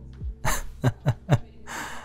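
A man's breathy laughter: a burst of breath, then three short chuckles falling in pitch about a quarter second apart, and a sharp breath near the end, over soft lo-fi background music.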